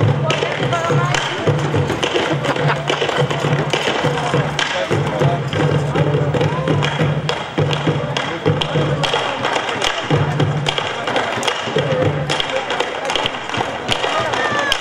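Two rope-tensioned drums beaten with wooden sticks in a driving, continuous rhythm, with sharp stick strikes and deep low booms coming in repeated groups.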